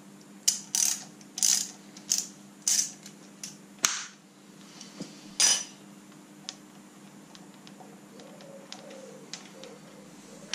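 Hand ratchet wrench clicking in short bursts as it is swung back and forth on the bolt of a camshaft seal installer tool. The bursts come about every half second to a second over the first few seconds, with one more near the middle, then only faint ticks.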